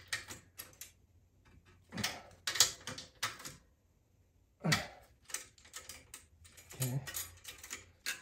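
Short bursts of metal clicking and clinking from hand tools on the rear axle hardware of a bicycle, in four groups of quick clicks with quiet gaps between.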